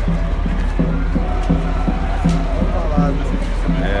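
Music with a regular low beat, about two thumps a second, and voices over it, above a steady low hum.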